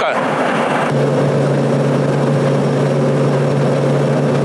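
Rostselmash Acros 595 Plus combine harvester running close by: its engine sets in with a loud, steady, low drone about a second in and holds level.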